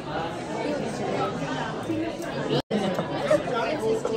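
Indistinct chatter of many overlapping voices in a busy restaurant dining room, cut off for an instant about two-thirds of the way through.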